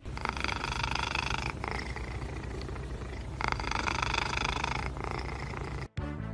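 Domestic cat purring while having its head scratched, a steady fine rattle that swells twice in long, stronger stretches.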